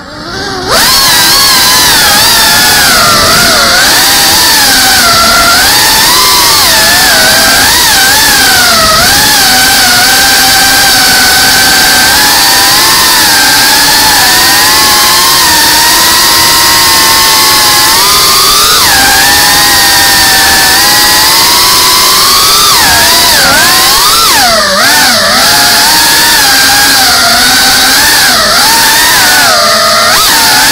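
FPV drone's brushless motors and propellers whining loud and close, as picked up by its onboard camera, the pitch rising and falling with the throttle as it manoeuvres.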